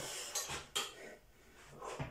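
Weight plates stacked on a loading pin clanking and clinking against each other as the loaded pin is gripped and moved. There are several separate metallic knocks, one near the start, two more within the first second and another near the end.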